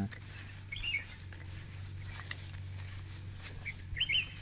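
Outdoor background: a steady low hum with a few short, high chirps, one about a second in and more near the end.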